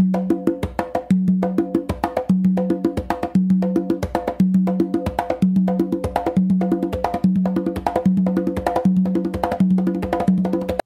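Two congas playing a mambo tumbao in a steady repeating cycle: a bass tone, sharp closed slaps from both hands, and two ringing open tones on the tumba, about once a second.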